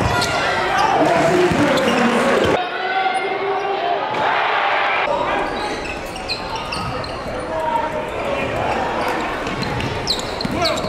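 Live basketball game audio in a gym: a ball bouncing on the hardwood court and voices from players and spectators echoing around the hall. The sound changes abruptly about two and a half seconds in and again about five seconds in, where clips are cut together.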